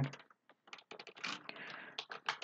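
Computer keyboard keystrokes: a few faint, irregular clicks that begin after a short silence, about a third of the way in.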